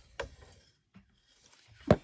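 Faint handling of a handheld plastic lamp socket: a soft click shortly after the start, then one sharp click near the end.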